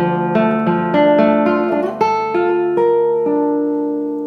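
Nylon-string classical guitar playing a slow broken-chord arpeggio on a D minor chord, single notes plucked one after another and left ringing over each other, climbing in pitch as the hand shifts from first position up to fifth position.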